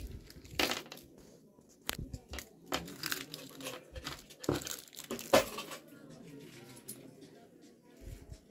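Rustling, crinkling and scattered sharp clicks and knocks of things being handled at a shop counter as change is gathered, loudest about five seconds in.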